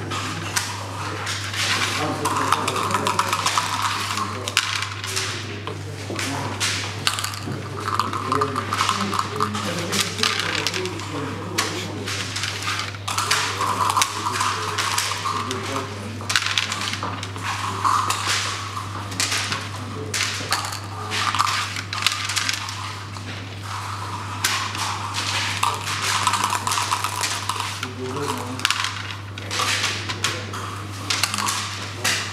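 Plastic backgammon checkers clacking and sliding on a wooden board, with dice being rolled, in a quick run of clicks and knocks over a steady low hum.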